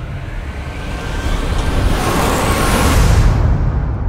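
Film-trailer sound design for a magical blast: a deep rumble under a rushing swell that builds for about three seconds, with a rising whistle inside it, then falls away near the end.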